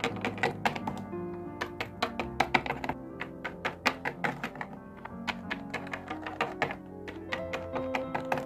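Plastic Littlest Pet Shop figurines tapping and knocking on a hard surface as they are moved along by hand, in quick, irregular clicks over background music.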